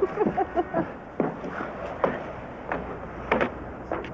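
Footsteps of a man walking while carrying someone, sharp steps about two-thirds of a second apart. A few brief murmured voice sounds come just before them.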